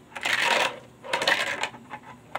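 Tech Deck fingerboard wheels rolling and scraping across a small ramp, in two short rattling passes about a second apart.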